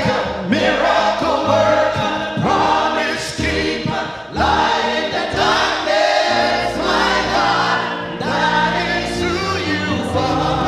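A gospel praise team of men and women singing a worship chorus together on microphones.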